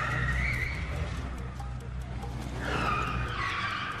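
Car tyres squealing twice, the second squeal falling in pitch, over a low steady hum.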